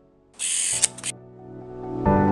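Camera shutter sound effect for a photo transition: a short burst of shutter noise with a couple of sharp clicks, under a second long, about a third of a second in. Background music fades out just before it and quietly returns after it.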